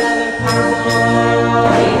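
Stage-musical orchestra holding sustained chords, with bright jingling percussion strokes about every half second; the music shifts near the end as the ensemble's singing begins.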